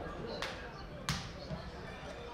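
A football kicked twice in a passing warm-up, two sharp thuds about half a second apart, the second louder.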